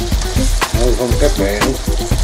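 Beef liver and onion slices sizzling in a hot pan as a spatula stirs them, with background music playing over them.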